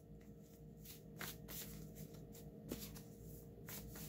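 A stack of cards being shuffled by hand: faint, irregular papery flicks and slides as the cards are worked through.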